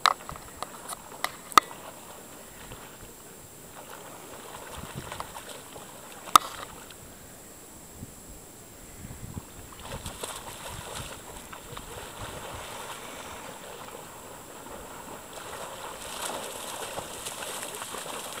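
Gentle water lapping and sloshing, with a sharp click a little after a second and another around six seconds in.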